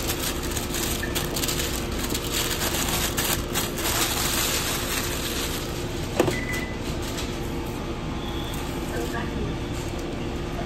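Busy fast-food kitchen: a steady hum of ventilation and equipment, with paper sandwich wrappers crinkling under gloved hands during the first few seconds. A single sharp knock comes about six seconds in, followed by a brief high tone.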